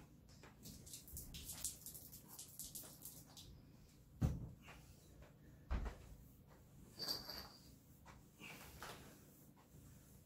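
Hardwood floor polish being squirted from its bottle onto a wooden floor in a run of quick hissy squirts, then a flat microfiber mop spreading it across the boards. Two dull thumps about four and six seconds in are the loudest sounds, with a short squeak soon after.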